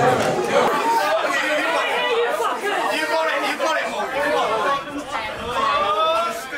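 Crowd of spectators chattering and calling out, many voices overlapping.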